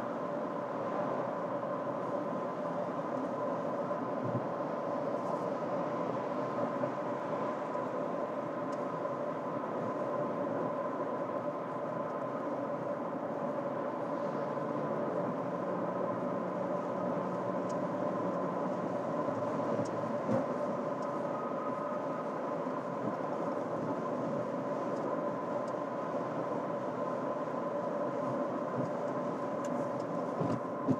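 Steady road and tyre noise inside the cabin of a 2024 Toyota RAV4 cruising at freeway speed: a constant drone with a faint steady hum running through it.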